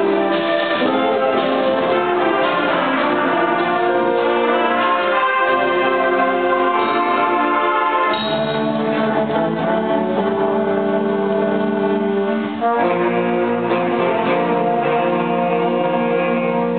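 Student concert band of woodwinds and brass playing sustained, changing chords, with a brief break about twelve and a half seconds in before the full band comes back in.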